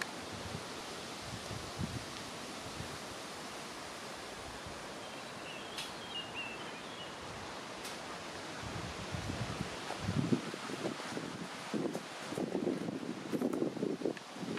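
Wind in the trees with steady rustling leaves, growing gustier and louder in the last few seconds.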